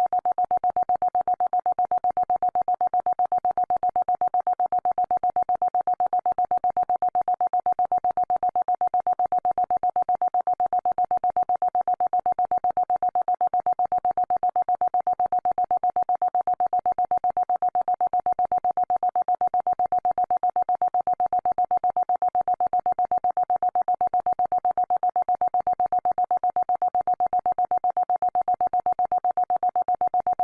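Electronically generated 'healing frequency' tone: one steady mid-pitched tone held without change, pulsing rapidly and evenly.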